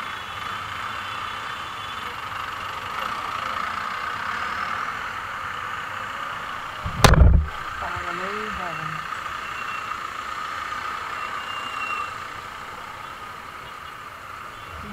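Busy street traffic in a jam: vehicle engines running, with faint voices, and one loud short thump about halfway through.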